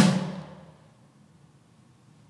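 A single hard stick hit on an electronic kit's snare pad, sounding a snare drum that dies away over about half a second. It is the first of five hard hits the Pearl Mimic Pro module records to learn the snare's crosstalk.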